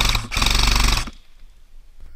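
Airsoft M4 electric rifle (AEG) firing two full-auto bursts, a short one, then a longer one of just under a second.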